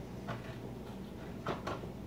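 A manual can opener being worked on a metal can of sauce: a few short, faint clicks, two of them close together about a second and a half in.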